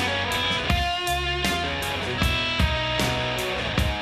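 Alternative rock band recording in an instrumental passage with no singing: electric guitar chords ring out over the band, with regular percussive hits.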